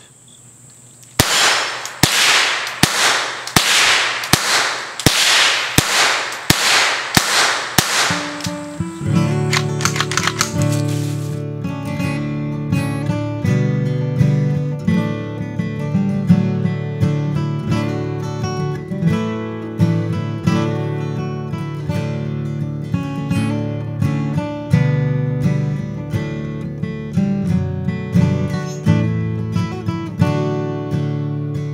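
Ruger 10/22 Takedown .22 semi-automatic rifle fired in a steady string of shots, about two a second, for around seven seconds. Acoustic guitar background music follows from about nine seconds in.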